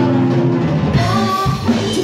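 Live rock band playing: electric guitars, bass guitar and a drum kit, with a woman singing lead.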